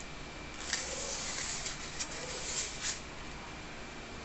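Rustling and a few light clicks from hands handling small craft pieces on a work table, lasting about two and a half seconds.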